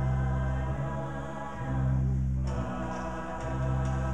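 Mixed show choir singing long held chords over a live band with a deep, sustained bass line, a new phrase starting sharply about two and a half seconds in.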